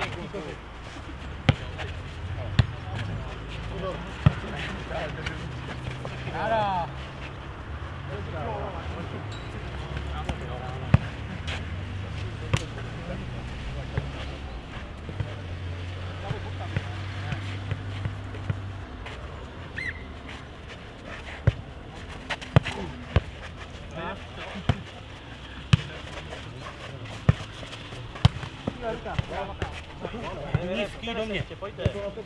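A nohejbal ball being kicked and headed by players and bouncing on a clay court: sharp thuds come at irregular intervals through a rally. Players' voices are faint, and there is a low steady hum for about the first two-thirds.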